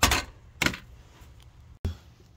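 Two short knocks about half a second apart, followed by faint background noise.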